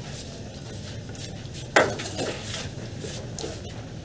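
Faint clinks and rattles of hard objects being handled, with one sharp click and a brief falling squeak a little under two seconds in.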